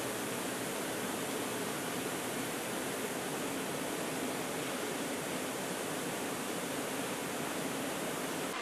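Hydromassage jets in a spa pool churning and bubbling the water: a steady, even rush of water.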